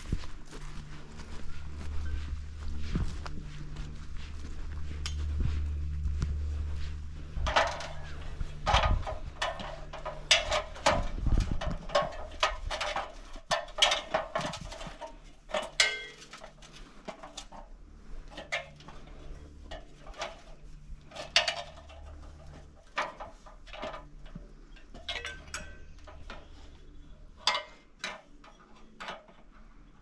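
Boots climbing the rungs of an aluminium extension ladder, a run of irregular knocks and clanks. A low rumble fills the first several seconds.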